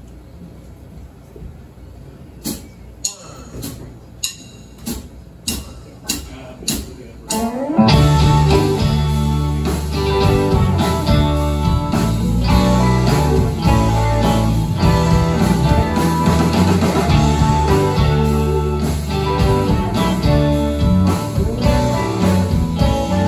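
A count-in of about eight evenly spaced sharp clicks, then a full rock band comes in together about eight seconds in: electric guitars, electric bass and drums playing an instrumental intro.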